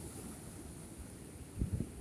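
Wind buffeting the microphone over waves washing against the boulders of a rock jetty, with a stronger buffet about one and a half seconds in.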